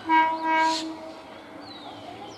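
Electric multiple unit (EMU) local train's horn sounding one steady blast of about a second, starting suddenly and then fading.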